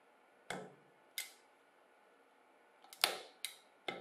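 A utility knife blade cutting into a thin ribbed tin can: a handful of sharp, separate metallic clicks and snaps as the blade punches and slices the can wall, with the loudest about three seconds in.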